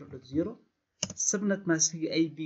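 A few keystrokes typed on a computer keyboard, under a man's lecturing voice.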